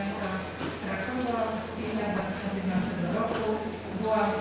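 A woman speaking continuously through the hall's microphone system, with a steady low hum beneath the voice.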